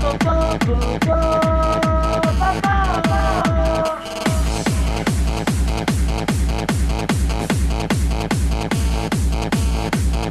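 Electronic dance music played loud from a DJ set: a steady kick drum a little more than twice a second under held synth notes that bend in pitch. About four seconds in the kick drops out briefly, then returns with brighter hi-hats.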